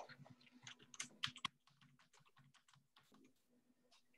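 Faint computer keyboard typing and clicking, a quick run of keystrokes in the first second and a half, then only scattered soft clicks.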